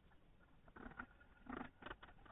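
Faint knocking and scraping of a chisel driven by a wooden mallet into the edge of an oak board: a short cluster about a second in, and a louder double one near the end.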